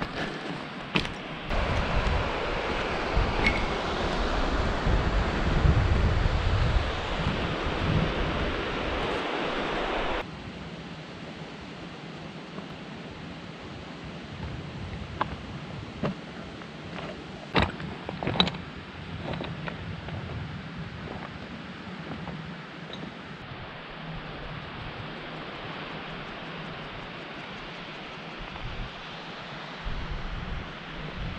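Wind buffeting the microphone, gusting with a low rumble, cutting off abruptly about ten seconds in. A quieter steady rush of wind follows, with a few sharp clicks of footsteps on stones.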